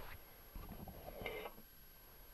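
Quiet room tone with faint low rumbles of a hand-held camera being moved, and a brief soft rustle just over a second in.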